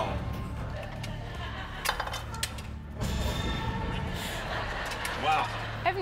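Thin sticks being pulled out through a clear plastic cylinder of water balloons, giving a few light clicks and clinks about two to three seconds in.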